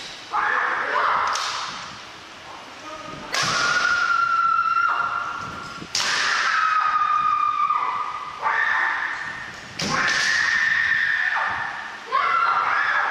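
Kendo fighters' kiai, long held shouts one after another, with sharp cracks of bamboo shinai strikes about three seconds in, about six seconds in and near the ten-second mark, echoing in a large wooden-floored hall.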